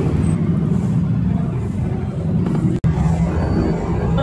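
Steady low rumble of outdoor background noise, with a momentary dropout nearly three seconds in.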